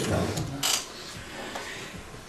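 A pause in a man's talk: the last of his voice fades out, a brief soft rustle comes a little over half a second in, then quiet room tone.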